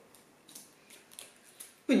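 Faint handling noises from hands working at the wrapping of a small glass jar: a few soft, scattered clicks and rustles.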